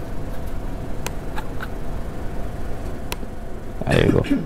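Steady low room rumble with a few sharp laptop clicks about two seconds apart, and a louder thump at the very end.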